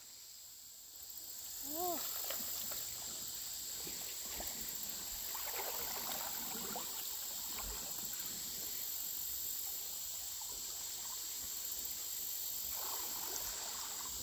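Faint creek-side ambience: a steady high-pitched insect drone over quietly running stream water, with one short rising-then-falling call about two seconds in.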